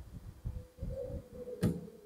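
Faint, soft low thumps with a single sharp click about one and a half seconds in, typical of handling and rubbing noise on a clip-on microphone as a seated person moves at a desk.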